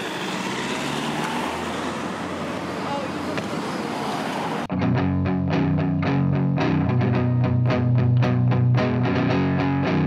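A steady rushing background noise gives way suddenly about halfway through to a rock band: distorted electric guitar, bass guitar and a steady beat on drums.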